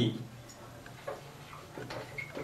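Marker pen writing on a whiteboard: a few faint, short ticks and scratches as the tip strikes and drags across the board.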